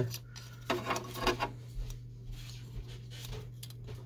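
Light rustling and small clicks of plastic parts and a flat ribbon cable being handled on an Epson WorkForce WF-2650 printhead, with a steady low hum underneath.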